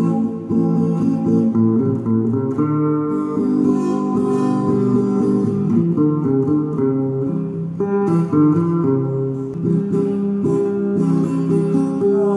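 Acoustic guitar playing an instrumental passage of plucked notes and chords.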